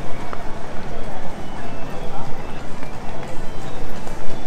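Busy pedestrian street at night: many passers-by talking, with music playing from the storefronts, all blended into a continuous crowd hubbub.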